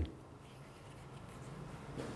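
Quiet room tone with a faint steady low hum; no distinct events.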